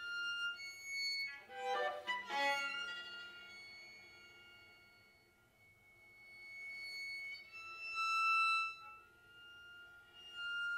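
Solo bowed string instrument playing slow classical music: long held notes, a quick flurry of notes about two seconds in, a softer stretch in the middle, then a swell near the end.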